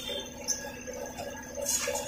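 Metal hand tools clinking on a concrete floor as they are handled near the end, after a single sharp click about half a second in.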